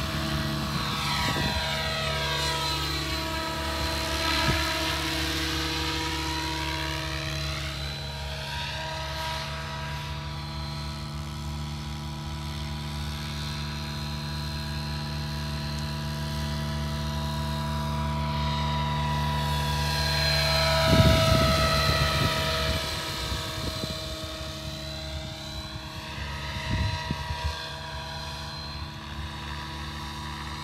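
Align T-Rex 700E electric RC helicopter flying: a steady rotor drone and motor whine with a sweeping, flanging whoosh as it lifts off and climbs away. A louder rumbling burst comes about two-thirds of the way through.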